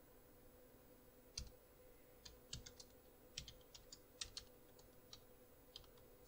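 Faint, irregular keystrokes on a computer keyboard as text is typed, starting about a second and a half in, over a faint steady hum.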